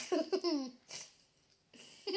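A small child laughing: a run of quick, high-pitched giggles in the first second, then one softer giggle.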